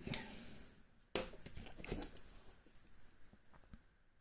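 Faint handling sounds. A sharp knock comes about a second in, then light clicks and rustles as a metal euro cylinder lock is lifted off a wooden tray and turned over in the hands.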